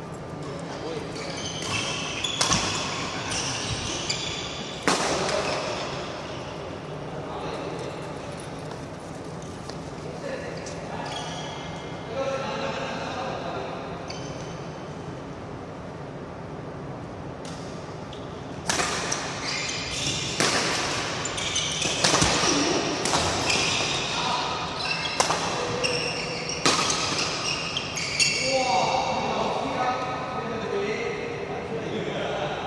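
Badminton racket strokes on a shuttlecock during a doubles game, sharp hits echoing in a large sports hall. There are a few scattered hits early on, then a quick run of hits in the second half.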